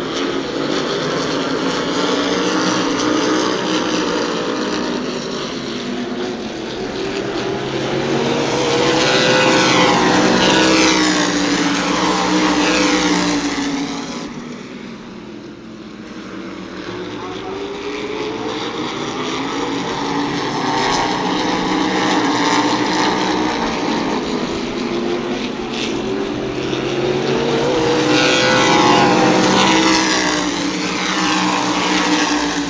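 A pack of open-wheel modified race cars running flat out around a short oval track. The engines swell loudly as the cars go by, about ten seconds in and again near the end, with the pitch falling as they pass, and there is a quieter lull in between.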